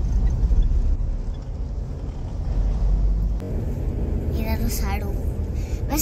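Low, steady rumble of street traffic, with a woman starting to speak over it about two-thirds of the way through.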